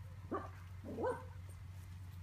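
A dog gives two short barks about two-thirds of a second apart, the second a little longer, rising then falling in pitch.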